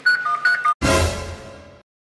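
A smartphone's short beeps alternating between two pitches, then, just under a second in, a sudden booming hit sound effect that dies away over about a second into dead silence.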